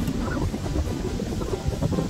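Wind buffeting the microphone, a low, uneven rumble.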